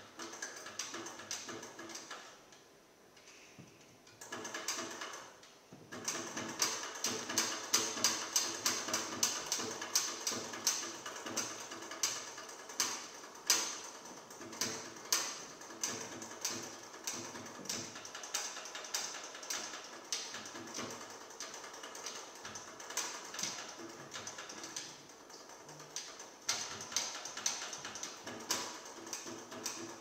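Trumpet played with extended technique: the valves are worked to give a rapid, irregular clatter of clicks, sparse for the first few seconds and then dense and louder from about six seconds in, with faint tones mixed in.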